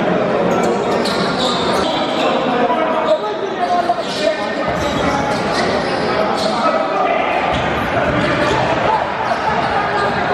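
A basketball dribbled on an indoor court under the steady chatter of spectators in a reverberant gym, with a few sharp knocks a few seconds in.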